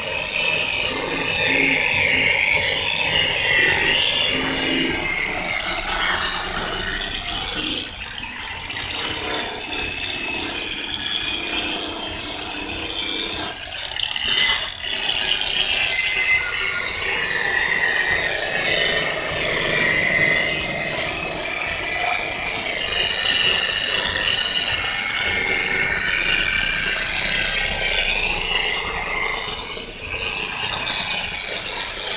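Handheld electric rotary polisher running with its buffing pad pressed against a car's painted body panel during a cut-and-polish. Its steady whirring motor rises and falls in loudness as the pad is pressed and moved, with brief dips about eight and fourteen seconds in.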